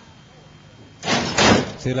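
Horse-racing starting gate doors banging open at the start, a sudden loud clatter about a second in that lasts under a second.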